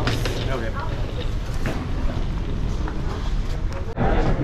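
Busy underground parking-garage ambience: a steady low rumble of vehicles with voices in the background, and light clatter as a suitcase is lifted out of a vehicle's cargo area.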